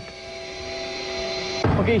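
Steady whine of a jet engine: a few held tones growing slowly louder. Near the end a heavier low rumble comes in.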